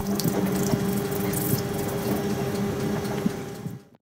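Hands rubbing together with hand gel: a continuous wet, squelchy rubbing over a steady low hum. It cuts off suddenly just before the end.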